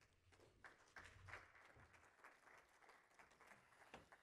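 Faint applause from a conference audience: many scattered hand claps welcoming a speaker to the podium.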